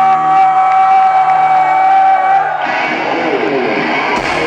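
Electric guitar through a loud stage amplifier holding one long, steady high note that cuts off sharply about two and a half seconds in. The crowd then cheers and whoops.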